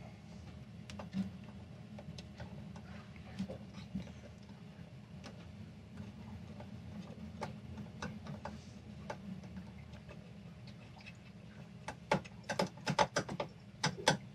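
Faint, scattered small metal clicks as a brass nut is unscrewed and a ring terminal taken off a galvanic isolator's terminal stud, with a quick run of louder clicks near the end. A low steady hum runs underneath.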